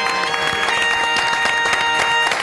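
Television station jingle with held notes that change in steps, with applause mixing in and growing toward the end.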